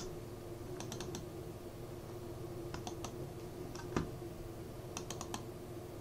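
Faint computer mouse clicks in small quick groups, such as double-clicks opening folders, over a steady low hum.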